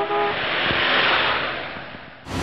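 Sound-effect whoosh of a vehicle driving past: a rush of noise that swells to its loudest about a second in and then fades away. A short pitched tone sounds at the very start.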